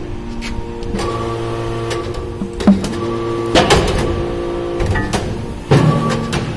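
Briquetting press for metal chips running with a steady hum, with sharp metallic clanks about halfway through and again near the end as the ram cycles and briquettes are pushed out.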